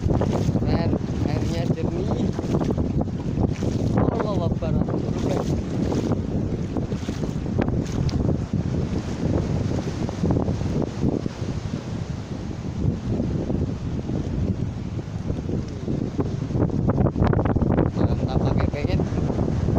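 Wind buffeting the microphone in a steady low rumble over the wash of ocean surf.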